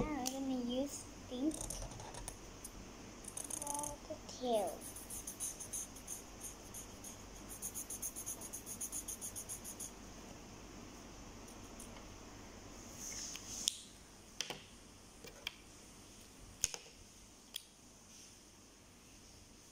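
A child makes brief wordless vocal sounds, then a felt-tip marker scribbles back and forth on paper in quick, even strokes, about five a second. It is followed by a handful of sharp clicks as the markers are handled.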